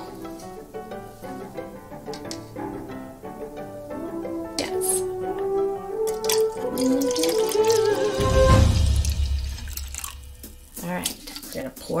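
Liquid being poured from a plastic bottle into a plastic measuring cup, loudest for a couple of seconds past the middle, over light background music with a simple melody.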